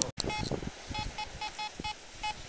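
Fisher F22 metal detector sounding a run of short beeps of the same pitch, about five a second, starting about a second in as the coil passes over a target in the sand. The detectorist calls it a strange signal.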